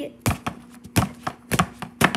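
A quick run of sharp knocks and taps close to the microphone, about seven in two seconds at an uneven pace, over a faint steady hum.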